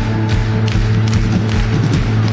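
Live band music over a loud PA with a steady bass-drum beat and sustained bass notes, heard from inside the crowd, with hands clapping along.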